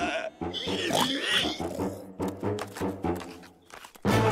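Cartoon pigs' voices, grunting and squealing, over background music.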